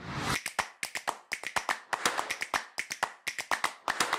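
A short whoosh, then a rapid run of sharp clicks and snaps, several a second, opening an intro jingle.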